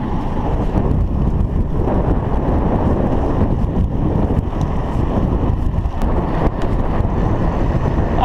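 Wind buffeting the microphone of a camera on a moving bicycle: a steady, loud low rumble.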